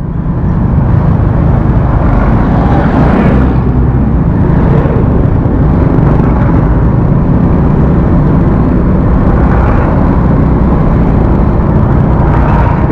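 Motorcycle engine running steadily while riding along, with heavy wind noise on the camera microphone.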